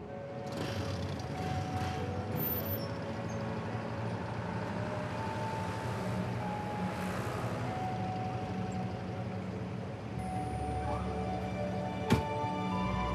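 Street traffic, with cars and a pickup truck passing, under background music of long held notes.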